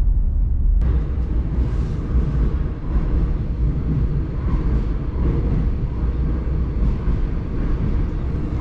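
Brief car cabin noise, then from under a second in the steady low rumble of a subway train running, heard from inside the carriage.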